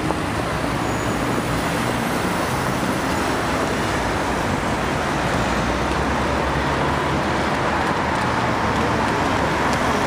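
City street traffic: a steady wash of car engines and tyre noise, growing slightly louder toward the end.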